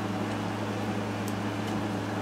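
Steady low hum with a faint even hiss: room background noise, with no distinct event.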